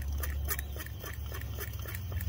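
Tank pump of a Coleman Peak 1 liquid-fuel camp stove being worked in quick squeaky strokes, about four a second, pressurising the fuel tank while the stove burns, over a steady low rumble.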